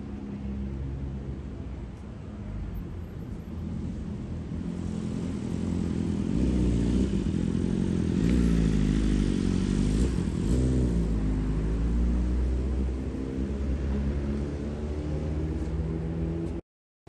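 Sport motorcycle engine passing close on the street, its revs rising and falling, loudest about eight to ten seconds in before fading.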